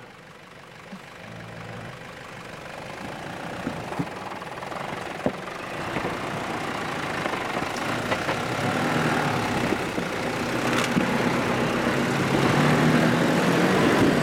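Nissan Patrol 4WD engine running at low revs as the vehicle crawls through mud, growing steadily louder as it comes closer. A few short sharp knocks sound along the way.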